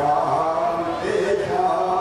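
Amplified voices chanting in long held notes that glide from one pitch to the next.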